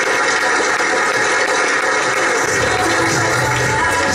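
Audience applauding over upbeat background music, with a bass line coming in about halfway through.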